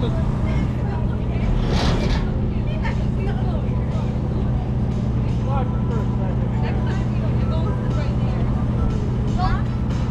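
Steady low drone of running machinery at a carnival ride, with scattered voices of children and people over it and a short rush of noise about two seconds in.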